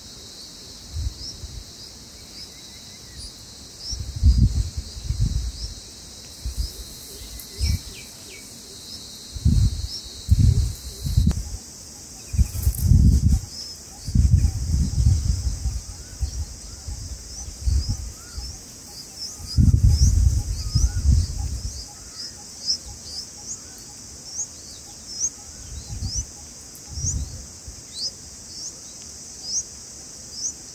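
Short, high rising bird chirps repeat a few times a second over a steady high insect hiss, coming thicker in the last third. Loud low rumbles and thuds come in several clusters and are the loudest sounds.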